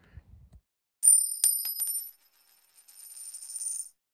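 Transition sound effect of a coin ringing: a few bright metallic clinks about a second in, then a high shimmering ring that stops suddenly near the end.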